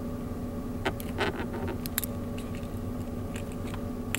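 A few light clicks and small handling noises as the white dock-connector plug of an iPod connection kit is fitted into an iPod nano, over a steady low hum.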